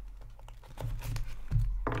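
Trading cards and card boxes being handled on a tabletop: light irregular clicks, taps and rustling as cards and packs are moved.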